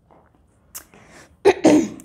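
A person sneezing once, loudly, about a second and a half in, after a short sharp hiss of breath.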